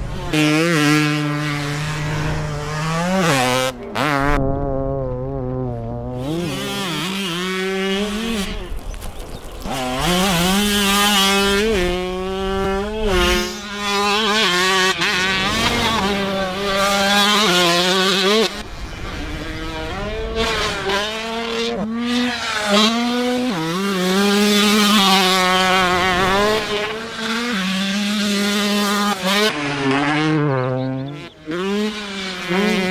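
Motor noise from a high-speed chase: an FPV racing quad's electric motors and a motocross bike's engine, the pitch rising and falling over and over with the throttle, with a few brief dips.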